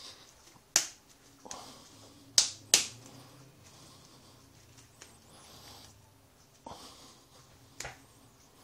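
Hands slapping and pressing a ball of very stiff dough between the palms: three sharp smacks in the first three seconds, then softer pats and rubbing, with a couple of lighter smacks near the end.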